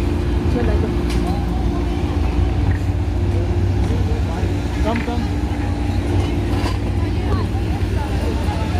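Indistinct voices of people walking and talking close by, over a steady low rumble and hum.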